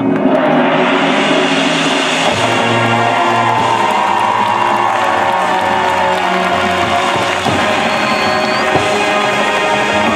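Marching band of brass and percussion with a front-ensemble pit playing a loud, full passage that comes in suddenly at the start and holds sustained chords. An audience cheers over it.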